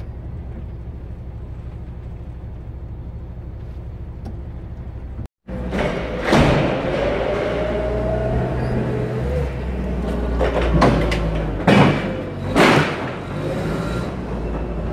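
Steady low rumble of a truck's diesel engine idling, heard inside the cab. After a cut, a large warehouse loading dock: a wavering whine with a forklift working, and several loud metallic bangs and thumps, the two loudest close together near the end.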